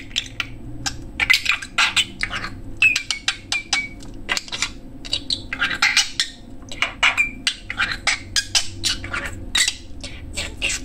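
A budgerigar chattering and warbling: rapid irregular clicks and scratchy notes with a few short whistles, about three seconds in and again near seven seconds.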